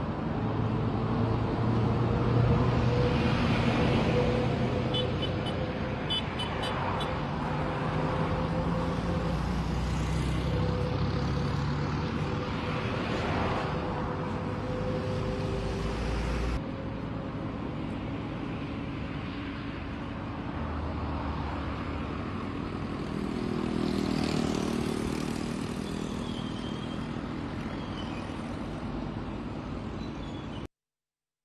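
City street traffic noise: a steady bed of engine and road noise, with vehicles passing in a few slow swells.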